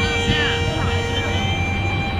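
Solo violin being bowed on a long held note for about the first second and a half, with voices and a steady low city rumble behind it.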